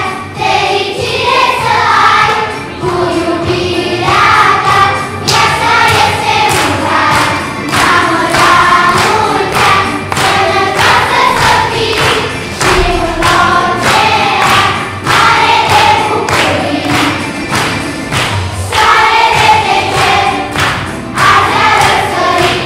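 Children's school choir singing a song together under a conductor, with a steady beat running underneath.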